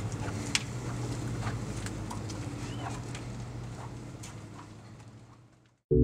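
Footsteps of sneakers on a concrete sidewalk, irregular light clicks over a steady low outdoor hum, fading out gradually. A brief high chirp sounds about three seconds in.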